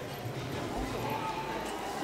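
Footsteps on the stage floor as several performers walk off, a scatter of irregular knocks and low thumps, over a faint murmur of voices in the hall.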